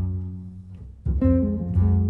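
Double bass played pizzicato under jazz guitar chords, a slow duo passage with no horn. The notes ring and fade, then a fresh chord and bass note are struck about a second in, with another just before the end.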